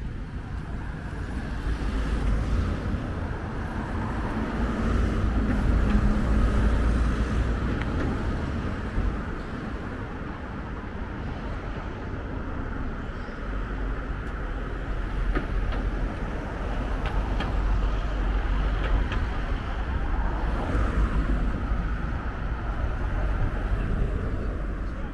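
Road traffic on the street beside the harbour: a steady low rumble of cars that swells louder twice as vehicles pass.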